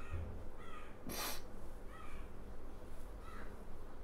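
A crow cawing: three short calls spaced more than a second apart, fairly faint. A short hiss comes about a second in.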